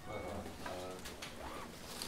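Quiet, low murmured voices, a few short hummed or mumbled sounds in a row.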